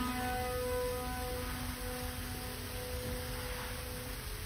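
A piano's final chord left ringing and slowly dying away as the song ends.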